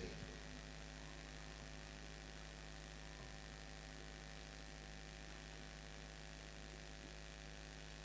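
Faint, steady electrical mains hum with hiss from the sound system: several steady tones held unchanging, with nothing else over them.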